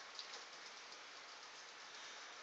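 Faint scratchy swishing of a mop being pushed across a hard floor, with a few light ticks.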